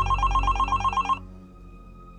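Mobile phone ringing with a rapid electronic trill of about nine pulses a second, which stops a little over a second in.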